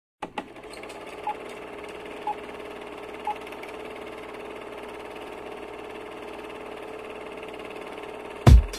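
Film projector sound effect: a steady mechanical whirr with a low hum, opening with a couple of clicks. Three short beeps a second apart in the first few seconds mark a film-leader countdown.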